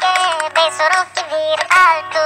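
A comic Hindi birthday song: a high-pitched singing voice carrying the melody over a music backing track.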